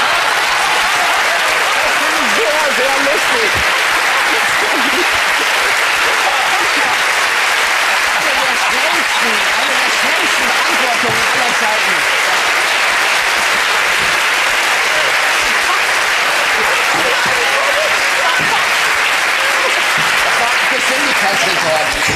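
Studio audience applauding steadily and loudly, with some voices mixed in, in approval of a correct answer.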